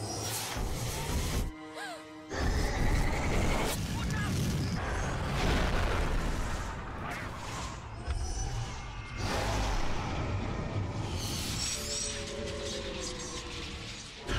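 Animated film soundtrack: orchestral score mixed with space-battle sound effects, with booming explosions as Y-wing starfighters are blown apart. It dips briefly about two seconds in, then stays loud.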